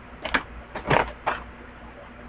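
Three short rustles of a thin, lubricated female condom being handled and turned over in the hands.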